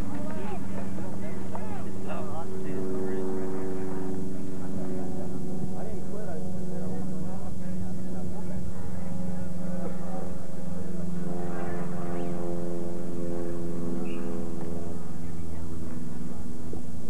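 Distant shouting and calling voices from a soccer field, heard in bursts, over a steady low drone that runs throughout.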